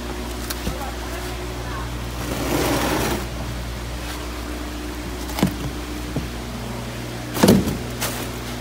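A steady low machinery hum under handling noises: a short rush of noise about two and a half seconds in, a knock a little past five seconds, and a louder bump near the end as plastic tubs and styrofoam shipping boxes are moved about.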